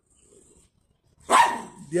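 A single short, loud dog bark about a second in.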